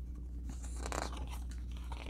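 Paper rustling as the pages of a glossy booklet are handled and turned, loudest about half a second to a second in.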